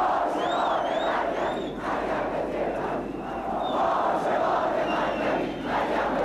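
A large crowd of troops cheering and chanting together, a dense, steady mass of voices, with a few short high-pitched rising-and-falling calls early on.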